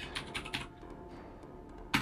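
Computer keyboard typing: a quick run of keystrokes in the first half second, then a single louder keystroke near the end. That last stroke is the Enter key submitting a terminal command.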